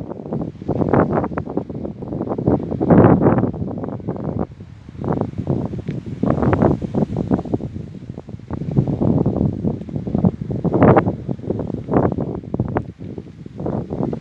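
Wind buffeting the microphone in irregular gusts, a rumbling noise that surges and drops every second or so.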